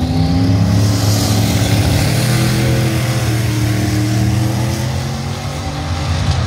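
Turbocharged Ford Fairmont wagon launching off a drag-strip start line and accelerating hard down the track, its engine pitch climbing, with a second vehicle launching in the other lane.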